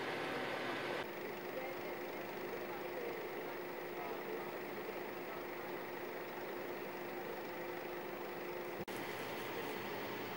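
Steady engine hum of an idling fire truck, with faint voices. The sound changes abruptly about a second in and again near the end.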